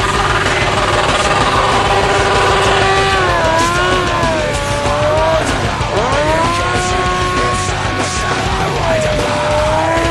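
Honda CBR900RR Fireblade inline-four engine revving up and down hard during stunt riding, with a sharp rev about six seconds in. Background rock music plays underneath.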